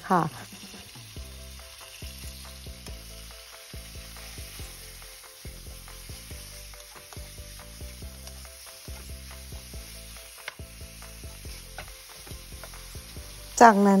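Sliced pork frying in hot oil in a wok: a steady sizzle, with frequent small knocks and scrapes of a wooden spatula stirring the meat against the pan.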